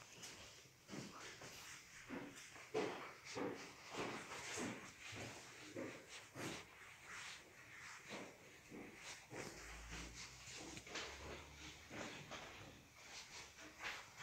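Faint, soft, irregular knocks and rustles, about two a second: footsteps and phone handling noise as someone walks slowly with the phone. A brief low rumble comes in about ten seconds in.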